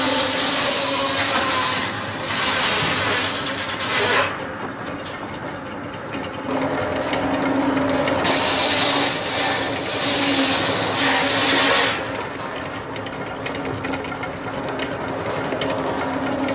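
Robert Hall circular saw bench running with a steady hum, ripping an ash plank. Two long cuts, in the first four seconds and again from about eight to twelve seconds in, add a loud hiss over the hum. The blade runs free between them.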